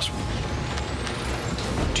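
Trailer sound-effect riser: a steady hiss-like whoosh with a thin high whistle climbing steadily in pitch for about a second and a half.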